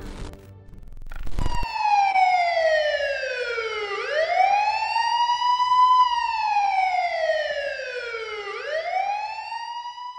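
A siren wailing slowly up and down: its pitch falls for about two and a half seconds, then rises again for about two, and does this twice. It starts just after a burst of intro music cuts off about a second and a half in.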